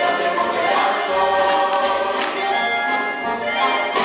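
A large stage chorus singing together over instrumental accompaniment in a live musical-theatre number, the full ensemble sustaining its notes.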